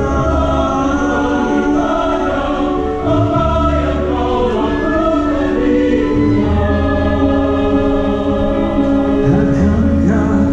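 Orchestra and choir performing a slow passage of long held chords, with low bass notes sustained underneath.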